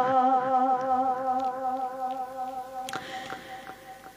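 A boy's voice holding one long hummed note in a Kashmiri naat, steady in pitch with a slight waver, slowly fading away. There is a faint click about three seconds in.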